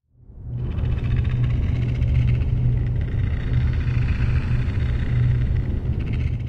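A deep, steady rumbling drone with a hiss above it, fading in over the first second and then holding evenly: an ambient sci-fi sound bed.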